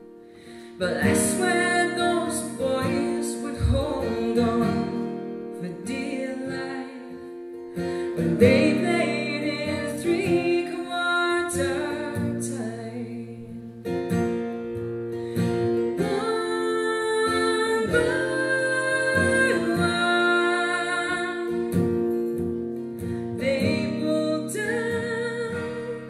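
Steel-string acoustic guitar and mandolin playing a folk song, with a woman singing over them. The music comes in quietly and swells about a second in.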